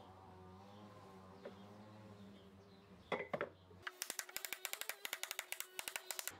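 Claw hammer driving nails through hardwood fence palings into the wooden corner blocks beneath: a short knock about three seconds in, then a quick run of sharp taps, about six a second, from about four seconds in.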